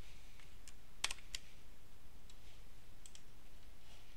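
About half a dozen faint, scattered clicks from a computer's mouse and keyboard, two of them close together about a second in and another close pair about three seconds in.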